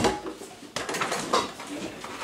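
Clinks and knocks of metal on metal as the stainless-steel bowl and attachments of a Bosch MUM5 stand mixer are handled and fitted.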